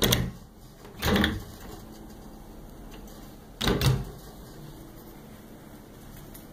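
Wooden hotel closet doors being handled, giving three short bumps and knocks: one at the start, one about a second in, and one a little more than halfway through.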